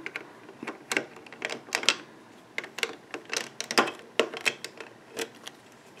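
Irregular light plastic clicks and taps as the blue base piece of a Rainbow Loom is worked loose from the clear plastic pin bars with a metal hook and fingers.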